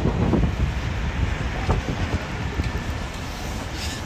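Wind buffeting a phone's microphone outdoors, a steady rumbling noise with city street traffic underneath.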